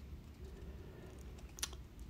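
Quiet room tone with a faint steady low hum, and a short faint click about one and a half seconds in.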